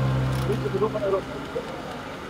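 Steady hum of a road bike's tyres spinning on training rollers while the rider pedals, fading about halfway through, with voices in the background.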